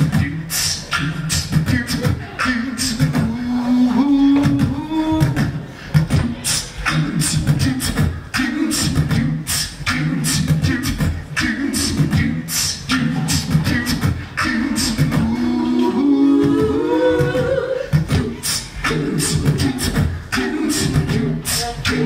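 A live-looped a cappella groove: beatboxed kick-and-snare hits over a repeating low sung bass line. One voice slides upward about two-thirds of the way through.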